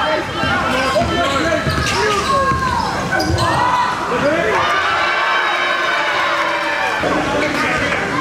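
A basketball bouncing on a hardwood gym floor during live play, with voices from players and onlookers in the gym.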